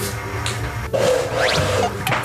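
Background music from the show's edit, changing abruptly about a second in, with a short rising glide sound effect soon after.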